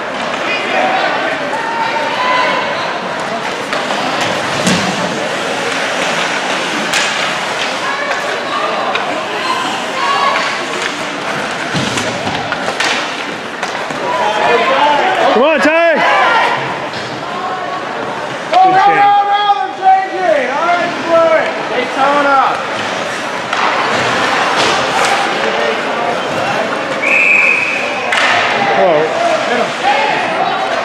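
Ice hockey game sounds in an echoing rink: spectators talking and shouting, with sharp slaps and thuds of pucks, sticks and players against the boards. Louder shouts come about halfway through, and a short high whistle blast sounds near the end.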